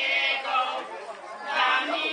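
Small women's folk choir singing a cappella, several voices together holding sustained notes.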